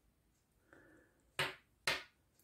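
Metal knitting needles clicking together twice, about half a second apart, as stitches are worked off during a cast-off.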